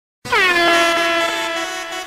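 DJ-style air horn sound effect: one long blast starting about a quarter second in with a quick drop in pitch, then held and slowly fading.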